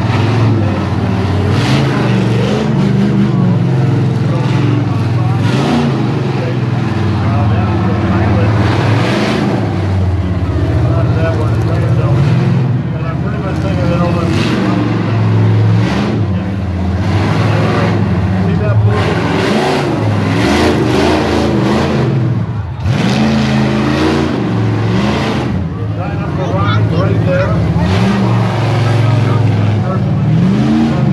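A big truck engine running hard and revving, its pitch rising and falling, with people talking over it.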